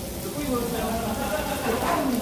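Pork belly sizzling on a tabletop grill plate, under background voices.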